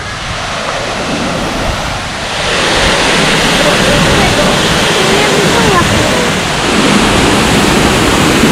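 Man-made waterfall pouring over rockwork: a steady rush of falling water that gets louder about two and a half seconds in.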